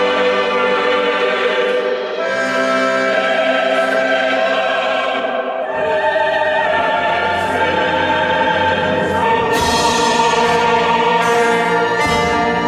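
Choral and orchestral music: a choir singing long held chords over an orchestra, the harmony changing every few seconds.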